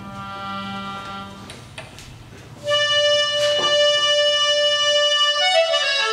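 Accordion playing slow, sustained chords: soft held notes at first, then a much louder chord comes in about halfway through and is held, moving to a new chord shortly before the end.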